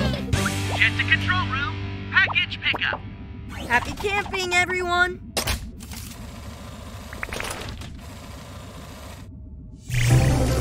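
Cartoon soundtrack: high-pitched, squeaky chirps from small animated robot pets over background music, with a sharp click about five seconds in, then quieter music.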